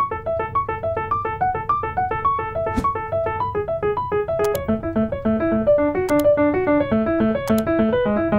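Piano playing a quick, even figure of short repeated notes around a held chord, with a lower repeated note joining about halfway through. A few sharp clicks sound among the notes.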